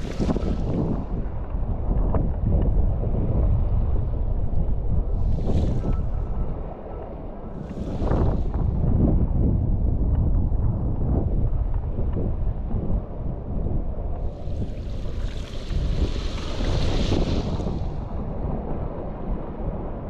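Strong wind, about 25 knots, buffeting an action camera's microphone in a steady low rumble, with brief hissing washes of choppy water. Short washes come at the start and twice in the first half, and a longer one runs from about three-quarters of the way in.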